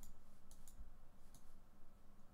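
Computer mouse clicking: about four light, sharp clicks at uneven intervals.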